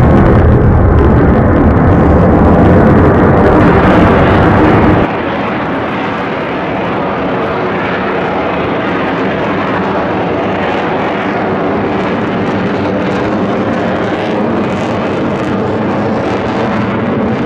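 Loud jet engine noise from an F-35 fighter jet in flight. The level drops abruptly about five seconds in, and the sound then carries on steadily, quieter and with less low rumble.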